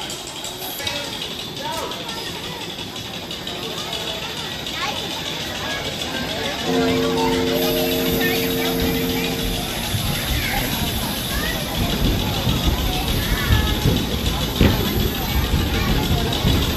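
Ride ambience of a spinning teacup ride, with background music and scattered voices. A steady multi-note tone is held for about three seconds partway through, then a low rumbling noise builds from about ten seconds in as the cups get moving.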